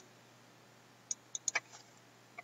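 A quick run of four light computer-mouse clicks a little past the first second, over faint hiss.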